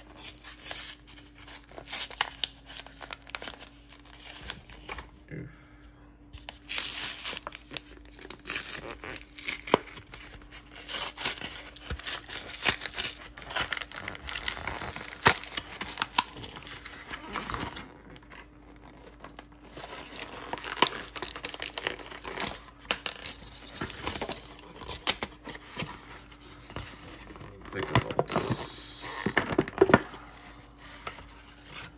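A cardboard-backed plastic blister pack of Pokémon cards being torn open by hand, the clear plastic crinkling and the card backing tearing in repeated irregular bursts as the blister is peeled away.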